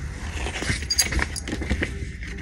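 Handling noise: a quick run of rustles, clicks and knocks as a paperback book is handled and the recording device is moved.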